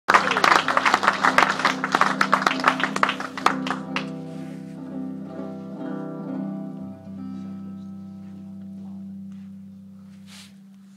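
Acoustic guitar being strummed hard and fast; the strumming stops about four seconds in and the last chord rings on, fading out.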